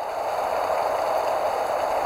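Steady rushing noise that swells a little at the start, then holds even, with no distinct strokes or tones.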